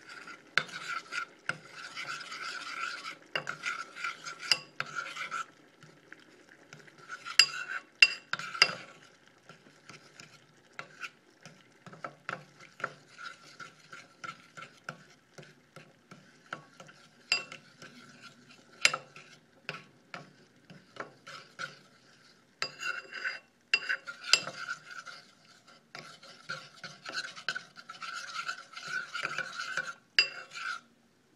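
A metal spoon stirring and scraping round a bowl of melted cocoa butter and shea butter, in runs of quick strokes with small clinks against the bowl; the strokes thin out in the middle and pick up again near the end.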